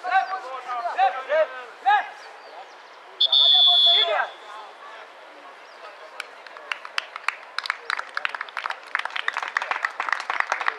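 Players' voices calling out, then a referee's whistle blown once, a single steady shrill blast of about a second, a little over three seconds in, which is the loudest sound. From about six seconds a fast, uneven run of sharp clicks follows.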